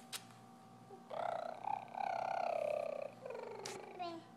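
A toddler singing: one long, wavering high note lasting about two seconds, followed by a shorter falling note. A sharp click comes just after the start and another near the end.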